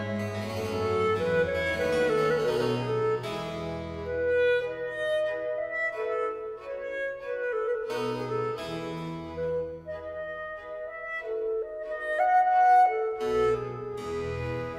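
Baroque chamber orchestra playing a slow Largo movement at low baroque pitch (A=415): period strings and harpsichord continuo with a chalumeau/baroque clarinet solo line, notes held and moving in a slow melody.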